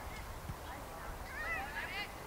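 Spectators at a soccer match shouting from the sideline over a steady outdoor rumble, with one high, rising-and-falling shout near the end.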